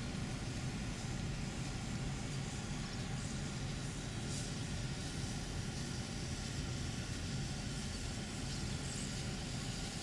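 Steady low rumble of vehicle noise with a hiss over it, even throughout, with no distinct knocks or calls.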